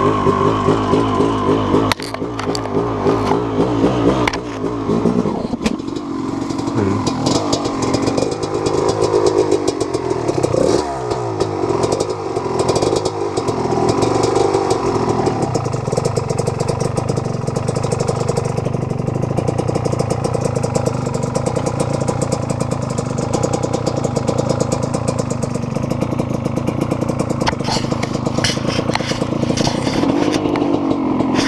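250 cc two-stroke dirt bike engine running at low revs on a trail, its pitch rising and falling with the throttle. The revs dip sharply and pick up again about ten seconds in, then hold steadier, with a few rattles near the end.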